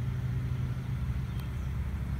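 A steady low engine hum, like a motor vehicle running nearby.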